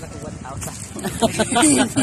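People talking: voices that grow louder in the second half.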